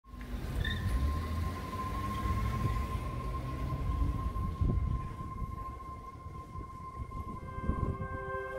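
Montage soundtrack: a low rumbling drone with one steady high-pitched tone held over it, and soft plucked ambient music notes coming in near the end.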